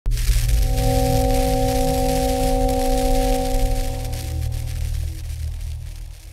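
Intro sound design: a sustained droning tone over a deep rumble and a hiss. It starts abruptly and fades away over the last second or so.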